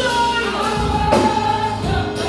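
Live gospel praise-and-worship music: a woman sings lead into a microphone in long held notes, backed by other singers, over a guitar and a drum beat.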